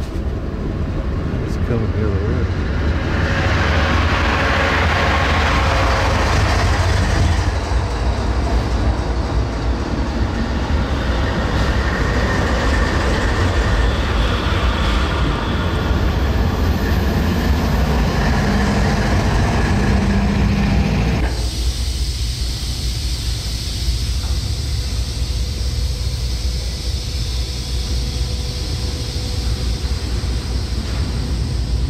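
Trains rolling past close by on the tracks alongside, their wheels and cars rumbling and clattering. About two-thirds of the way through, the sound drops abruptly to a steadier low rumble.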